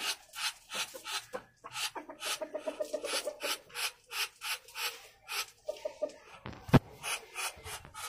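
Poultry clucking in short runs of quick notes over repeated irregular scraping and rubbing, with one sharp knock, the loudest sound, near the end.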